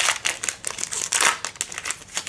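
Foil wrapper of a Pokémon card booster pack being torn open and crinkled by hand, a run of sharp crackles that is loudest at the start and again just after a second in, then thins out.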